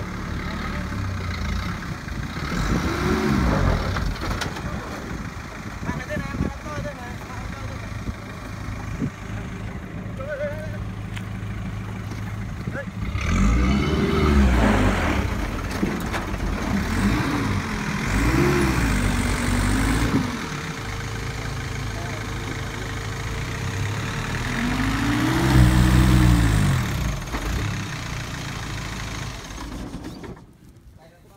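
Small cargo truck's engine running under load and revved up and back down several times, the loudest surge near the end, as it tries to pull out of mud where it is stuck.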